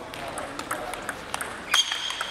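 Table tennis ball clicking sharply off the bats and table during a serve and the rally that follows, several light ticks with a louder pair near the end.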